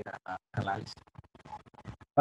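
A man's voice speaking softly in short, broken fragments, the sound cutting out to silence between them.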